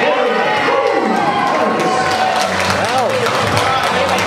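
A crowd of spectators shouting and cheering, with many voices overlapping. One voice rises and falls in a loud call about three seconds in.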